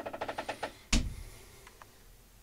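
A closet door being handled: a quick run of fine clicks, then one sharp knock with a low thud about a second in, and a couple of faint ticks after.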